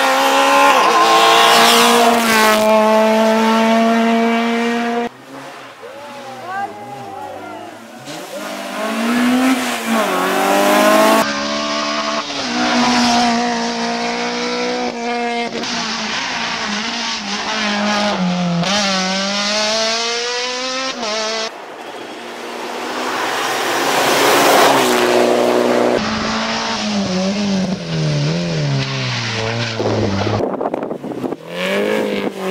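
Rally cars' engines revving hard and passing one after another on a tarmac stage, the pitch climbing and dropping with each gear change, and falling as a car draws away near the end.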